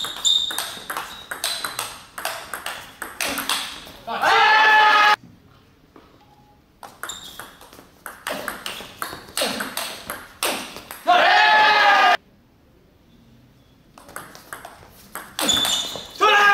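Table tennis rallies: rapid clicks of the ball off the rackets and the table, a few strikes a second. Each rally ends in a loud shout from a player, about four seconds in, around eleven seconds, and again near the end.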